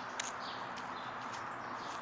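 Outdoor ambience: a steady hiss with a few faint, brief bird chirps, and a single sharp click about a fifth of a second in.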